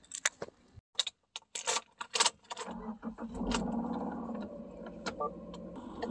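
Keys jangling and clicking for the first couple of seconds, then a car's engine starts about halfway in and settles into a steady idle, heard from inside the cabin of a 2015 Subaru Outback.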